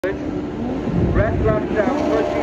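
A man's voice talking over a low, steady engine rumble.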